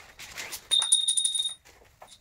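A single loud, high-pitched steady beep lasting just under a second, starting a little under a second in, with light clicks and rustling of tent poles and tent fabric being handled around it.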